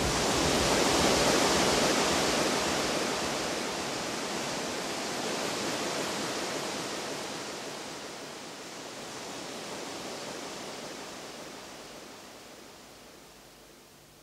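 A rushing wash of noise with no notes or beat, swelling in the first second or two and then slowly fading away, closing out the mix after the music stops.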